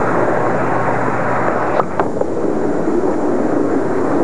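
Bowling ball rolling down a wooden lane with a steady rumble, over the noise of a busy bowling alley, with a sharp knock about two seconds in.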